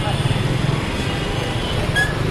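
Busy street noise: a motor vehicle engine running close by as a steady low rumble, mixed with the chatter of a crowd.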